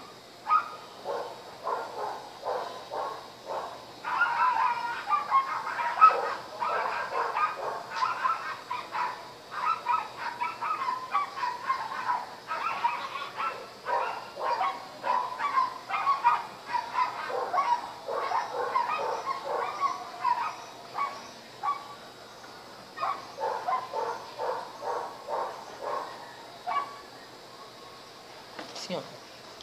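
An animal calling over and over in quick runs of short calls, with a brief lull a little past two-thirds of the way through.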